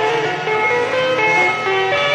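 Electric guitar playing a single-note lead improvisation, the notes stepping quickly up and down over steady lower tones.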